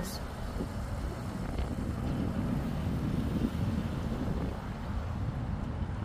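Steady low rumble of wind buffeting the phone's microphone outdoors.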